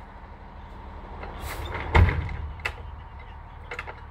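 Box truck's engine idling in a steady low hum, with one heavy thud about two seconds in as the worker at the back of the truck handles its rear door and liftgate.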